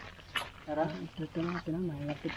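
A person's voice speaking a few low, quiet words.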